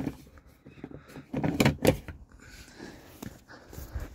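Several quick knocks and clicks of hard plastic and metal hardware, from a tri-fold tonneau cover's latch being handled, about one and a half to two seconds in, followed by a single lighter click a little after three seconds.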